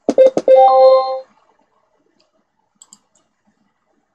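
A few sharp knocks at the start, running straight into a loud, steady, buzzy tone that ends after about a second. Faint computer mouse clicks come later, near the end.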